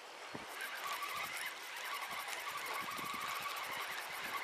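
Spinning reel being cranked to wind in a taut line under load: a rapid, even ticking with a faint whine.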